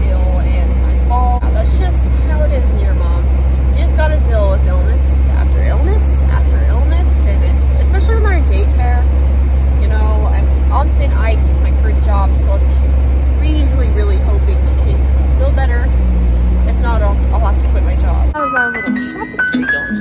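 Steady low road rumble inside a moving car, with a voice over it. About 18 s in the rumble cuts off and a jingly electronic tune starts.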